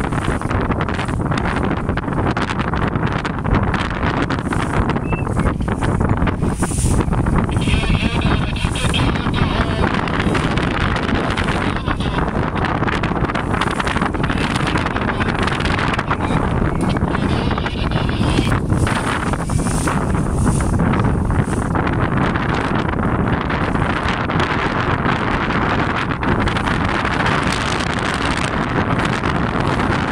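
Heavy wind buffeting the microphone over the steady running of a motorboat's engine and water rushing past the hull, as the boat crosses choppy sea.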